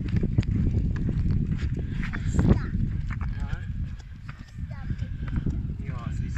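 Footsteps and a pushchair rolling along an asphalt road, giving an irregular run of clicks and knocks over a low rumble on the microphone.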